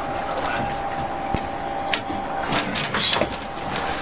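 Steady rushing background noise on a fishing boat, with a faint steady hum and a few light knocks and clicks of handling on deck.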